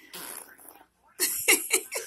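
A baby blowing raspberries with his mouth pressed against an adult's skin, a fart-like blowing noise. Two blows about a second apart, the second louder.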